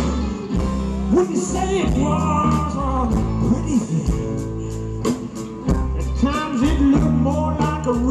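Live roots-rock band playing: a man singing over strummed acoustic guitar and electric bass, with a steady beat.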